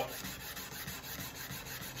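120-grit sandpaper on a small sanding block rubbed over the bevel of a high-carbon Damascus steel blade, a faint, even rasp.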